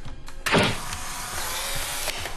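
Polaroid instant camera firing: a sharp shutter click about half a second in, then the camera's motor whirring steadily as it ejects the print.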